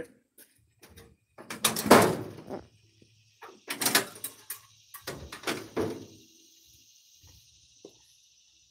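Car hood being released at its latch and lifted open: a few clunks and scrapes of metal from the latch and hinges, the loudest about two seconds in.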